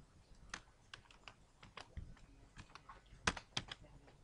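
Computer keyboard typing: irregular, fairly soft keystrokes, with a quick run of louder ones a little over three seconds in.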